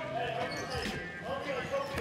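A basketball bouncing on a hard gym floor during a pickup game, with players' voices calling out faintly.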